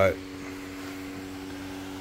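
A steady mechanical hum made of several low, even tones, with no change through the pause; the last spoken word trails off at the very start.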